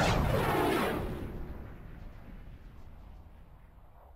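End-card sound effect: a sweep that falls in pitch during the first second, then fades away over about three seconds.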